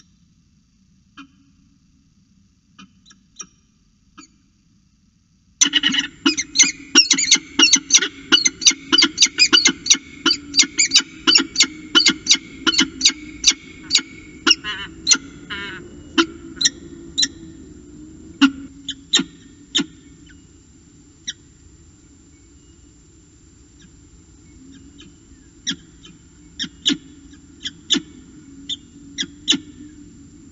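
Peregrine falcon calling at the nest box: after a few faint calls, a fast run of sharp, repeated calls starts about five seconds in, several a second, then thins to scattered single calls over a steady low hum.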